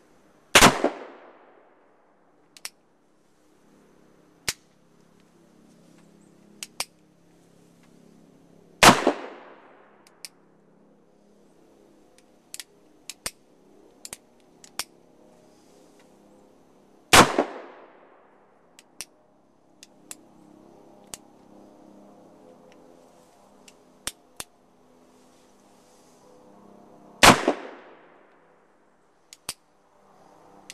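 Black powder cap-and-ball revolver fired four times, several seconds apart, each shot a loud sharp crack with a short echoing tail. Small metallic clicks between the shots as the hammer is cocked and the cylinder turns to the next chamber.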